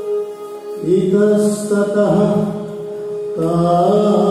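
Devotional song with a voice chanting in long held notes. After a softer first second, a new phrase begins, and another starts near the end.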